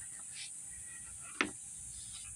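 A single sharp click about one and a half seconds in, from hands working the plastic wiring connectors at the headlight housing, over a faint, steady high-pitched hiss.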